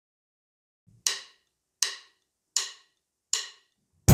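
Four evenly spaced count-in clicks, about three-quarters of a second apart, counting in a drum groove.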